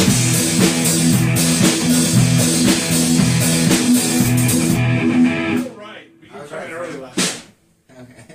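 A band playing guitar and drum kit, breaking off abruptly a little over five seconds in because a player came in early. Voices then talk briefly, with one sharp knock near the end.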